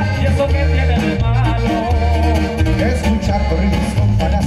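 Live norteño band music: an accordion melody over a pulsing electric bass, guitar and drums, loud and steady.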